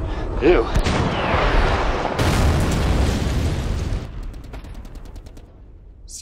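Action-film gunfire and blast sound effects: a few sharp shots and a brief shout early on, then a loud, deep rumbling blast that fades away over the last two seconds.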